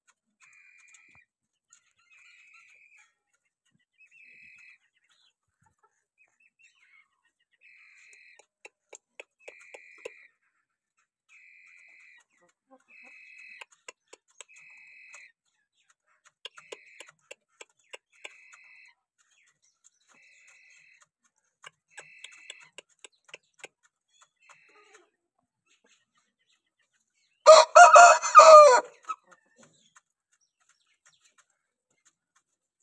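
Aseel rooster crowing once near the end, a loud call of about a second and a half. Before it come faint short whistles at one pitch, repeated about once a second, with soft clucks.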